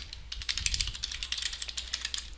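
Typing on a computer keyboard: a quick, uneven run of keystrokes that starts a fraction of a second in.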